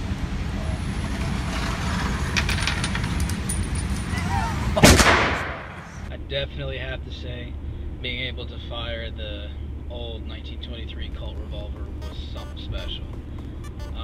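A single handgun shot about five seconds in, the loudest sound, echoing in an indoor shooting range. From about six seconds on, the steady low hum of a car's cabin while driving.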